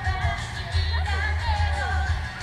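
A woman singing a pop song to her own acoustic guitar through a PA system. Wind buffets the microphone throughout as a low, fluttering rumble under the music.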